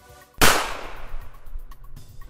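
A single pistol gunshot, a film sound effect, sharp and loud, with an echoing tail that fades over about a second. Soft background music plays beneath it.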